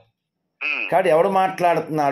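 Speech only: a brief dropout of dead silence, then a man talking from about half a second in.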